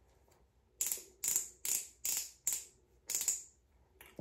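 Ratcheting clicks from the twist base of a Revlon Kiss Cushion Lip Tint pen being cranked to push the tint up to its cushion tip: six short clicking turns, about two a second.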